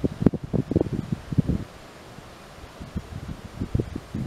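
Wind buffeting the microphone in irregular low gusts, heavy for the first second and a half, then easing, with a few more gusts near the end.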